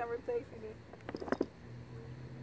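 A short, indistinct murmur of a person's voice, then a few light clicks, with a faint steady low hum setting in near the end.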